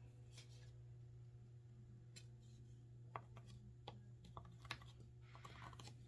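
Near silence over a low steady hum, with a few faint, scattered light clicks: a pencil tip tapping into the holes of a drilled wooden template as it marks hole centres on the wooden plaque blank beneath.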